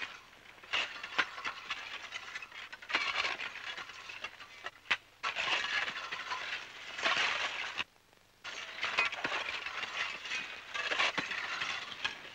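Several picks and shovels working rock and gravel: irregular clinks and knocks over a scraping, gritty noise, with a brief gap about eight seconds in.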